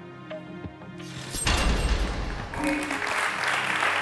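Soft TV game-show background music, broken about a second and a half in by a sudden deep hit, a studio sound effect. It is followed about a second later by studio audience applause.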